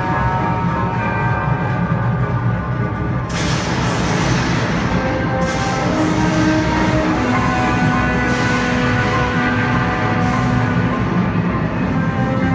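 The ride's soundtrack music plays with long held notes over a steady low rumble. About three seconds in, a hissing swell comes in over it, and it rises again twice later.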